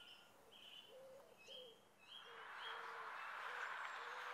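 Faint outdoor birdsong: low cooing or hooting notes and short, higher chirps repeating through the first half. In the second half a soft hiss swells up beneath them.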